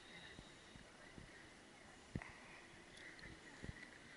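Near silence: a faint steady hiss with a couple of soft thumps, about two seconds in and again near the end.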